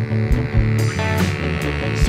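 A live rock band playing an instrumental stretch between sung lines: bass guitar, electric guitar and drums.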